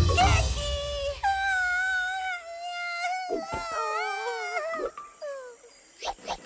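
A cartoon character's wordless wailing: a long, high, wavering whine that breaks into shorter moans and falling sobs, as the background music fades out in the first second.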